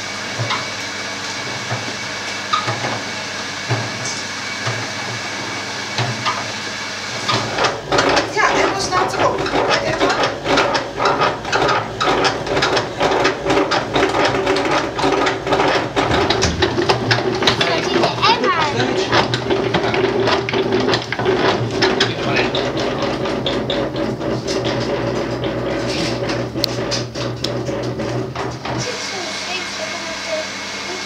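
Hand-cranked honey extractor spinning honeycomb frames in its stainless steel drum to fling the honey out. About a quarter of the way in it builds to a rapid clatter of gears over a steady hum, and it stops just before the end.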